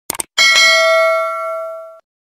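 A quick double mouse-click, then a bell ding sound effect that rings out with a clear tone and fades slowly: the notification-bell cue of a subscribe animation.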